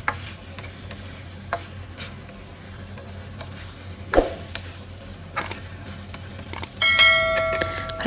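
A spatula scraping and clinking now and then against a stainless steel wok as broccoli and scallops are stirred, with a sharper knock about four seconds in. Near the end a bell-like chime rings out, held steady.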